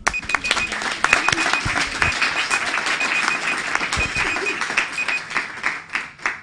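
Audience applauding, with an electronic timer beeping in quick runs of about four short beeps, roughly one run a second, marking the end of a one-minute poster talk. The beeping stops near the end and the clapping dies down.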